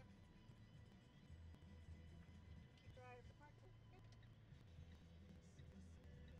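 Very faint, steady low rumble of a Fiat nine-seater minibus being driven slowly, heard from inside the cabin, with a brief murmured voice about three seconds in.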